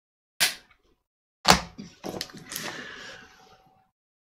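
Puffing on a tobacco pipe while relighting it with a lighter, and blowing out the smoke. Two sharp puffs come about a second apart, then a couple of small clicks and a longer breathy exhale that fades out near the end.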